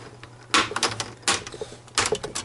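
The plastic snap clips of a Toshiba Satellite C875 laptop's screen bezel popping loose as the bezel is pried up by fingertips: a series of sharp clicks, a sign that the bezel is coming off.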